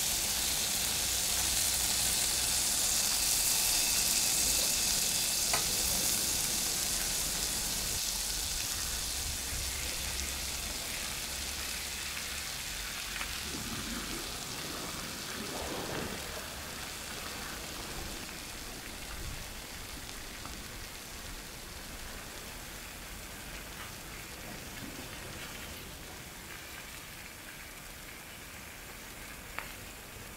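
Whole doctor fish sizzling on a hot metal plate over a wood fire, a steady hiss that slowly fades, with a couple of faint clicks.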